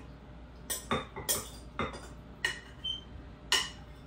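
A utensil clinking against a clear glass bowl as sliced cucumbers and onions are stirred, about seven uneven clicks.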